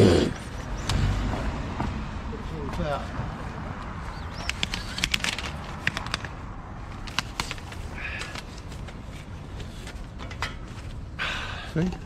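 A man coughs once at the start, then scattered short clicks and light knocks from fishing gear being handled.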